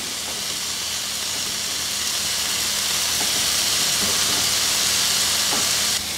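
Marinated paneer cubes sizzling in ghee in a nonstick pan: a steady hiss that grows slowly louder.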